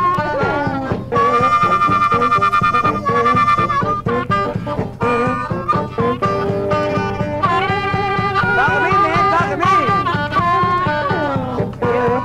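Early-1950s Chicago downhome blues trio playing an instrumental passage. Harmonica plays long, wavering held notes and bends over guitar and a steady drum beat, with no singing. It comes from a lo-fi transfer of the recording.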